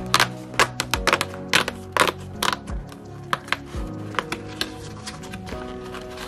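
Background music plays under a run of sharp, irregular taps and clicks from a cardboard advent-calendar door being torn open along its perforations and the item inside being pulled out.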